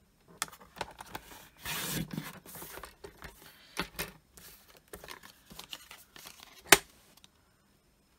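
Paper trimmer cutting and handling cardstock: a rasping cut and slide of card along the trimmer, light clicks and rustles of card pieces, and one sharp click near the end.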